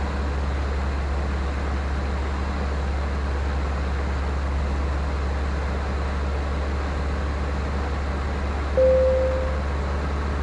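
Luscombe 8A light aircraft's engine and propeller droning steadily, heard inside the cockpit. Near the end, a short single-pitched beep lasting under a second stands out as the loudest sound.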